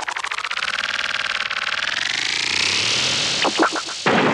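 Cartoon sound effect for a wooden treadwheel crane spun very fast by a man running inside it: a rapid, pulsing whir that slowly climbs in pitch, with a few short knocks near the end.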